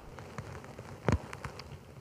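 A pause at a pulpit microphone: low room tone with a few faint clicks and one louder soft knock about a second in.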